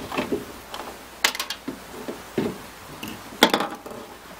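Plastic bottle cap being twisted off and plastic containers handled: a string of small clicks and knocks, the two loudest about a second in and near the end.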